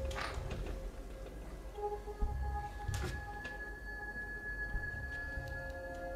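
Soft background music of long held, bell-like tones, with a couple of faint short knocks.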